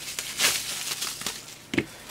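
Plastic bubble wrap rustling and crinkling as a small camera mount is unwrapped by hand, then a short knock near the end as the mount is set down on the bench.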